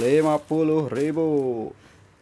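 A man's voice drawing out several sung or exclaimed syllables with a rising and falling pitch. It stops a little before the end.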